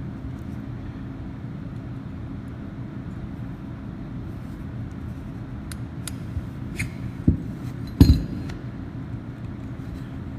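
Small metal clicks and clinks as the relief valve of a Watts 957 backflow preventer is reassembled by hand, with a handful of sharp clicks in the second half and the loudest knock about eight seconds in. A steady low hum runs underneath.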